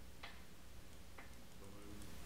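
Two faint, sharp clicks about a second apart over a steady low hum.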